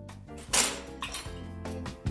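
A single clink about half a second in, ringing away quickly, as things are handled on a steel tabletop, over faint background music.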